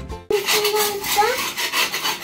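A metal putty knife scraping in repeated strokes across a painted wall, lifting off loose, peeling paint. Music cuts off just before the scraping starts.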